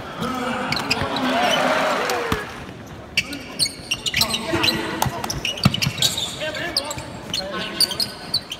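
A basketball bouncing on a hardwood court, with sneakers squeaking and players' voices calling out, echoing in a large arena. The voices are loudest in the first couple of seconds. After that, sharp bounces and squeaks come thick and fast.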